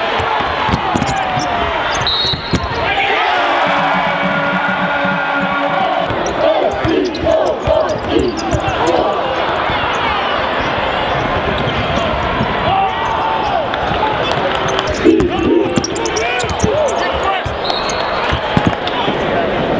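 Live college basketball game in an arena: the ball dribbling on the hardwood, sneakers squeaking, and crowd voices throughout. A short, high steady tone sounds about two seconds in and again near the end.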